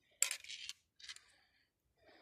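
Aerosol spray-paint can rattling as it is shaken, the mixing ball clicking inside in two short bursts, the first and louder one starting about a quarter second in.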